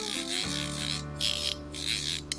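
Hands rubbing and scraping on a Waterworks-Lamson fly reel as its spool is seated back on the frame: three or four short rubs, over a steady low held tone.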